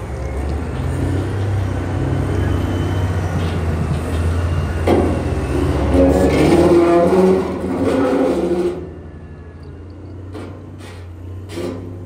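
Large Caterpillar wheel loader diesel engines running with a heavy low rumble, working harder and louder from about halfway. About three-quarters through the sound drops abruptly to a quieter rumble with a few sharp knocks.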